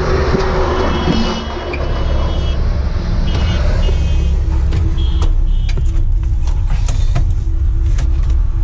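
Steady low rumble of vehicles beside a busy highway, with a few short high beeps in the first half and a handful of knocks as someone climbs into a truck cab.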